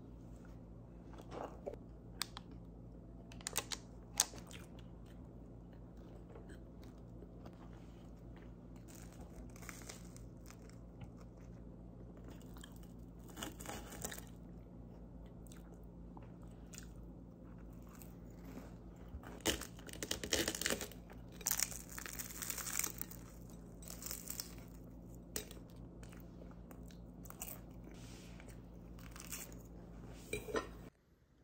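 Close-up chewing and crunching of crusty bread and flaky croissant pastry, in short crackly bursts that come thickest and loudest about two-thirds of the way through. A low steady hum runs underneath.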